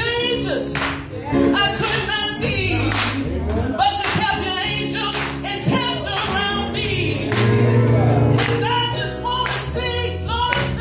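Gospel choir singing in full voice with a lead vocalist on a microphone, over music with a steady beat.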